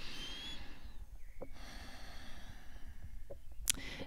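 A woman taking a slow deep breath to demonstrate it: a short breathy intake with a faint whistle at the start, then a longer soft breath out from about a second and a half in.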